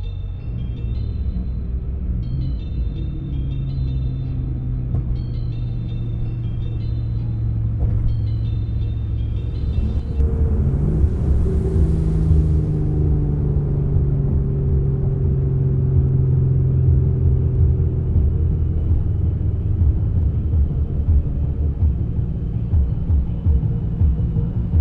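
Instrumental music intro over a heavy low rumbling drone. A short high figure repeats through the first ten seconds or so. About ten seconds in a rushing swell comes, and after it the low drone grows louder and pulses.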